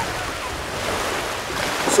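Small waves washing in over a sandy beach: a steady, even rush of shallow surf, with some wind on the microphone.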